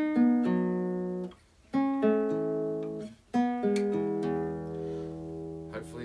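Nylon-string classical guitar playing three rolled three-note chords on the second, third and fourth strings, about a second and a half apart, each left to ring and fade. A low bass note joins the last chord and rings on under it.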